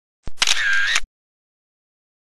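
A short inserted sound effect: a click about a quarter second in, then a bright sound lasting under a second with a ringing tone that dips slightly in pitch and comes back up.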